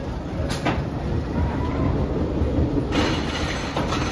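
Wooden roller coaster train rumbling as it rolls out of the station, with a sharp click about half a second in. About three seconds in a louder rattling clatter sets in as the train reaches the chain lift hill.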